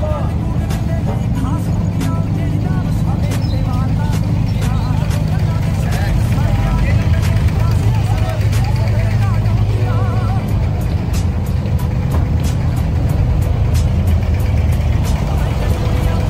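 Abra water taxi's inboard diesel engine running with a steady low drone, with scattered voices of passengers around it.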